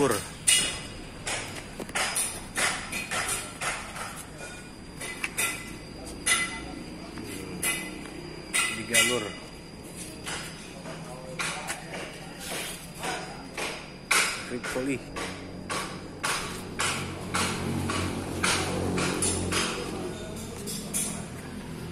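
Irregular sharp metallic knocks and clinks, two or three a second, of hammer and tool work on buses under routine servicing in a garage. A low hum builds near the end.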